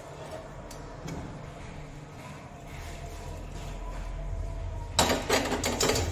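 Metal cookware clattering and scraping as an aluminium kadhai is handled on a gas stove, loud and busy in the last second after a few light clicks.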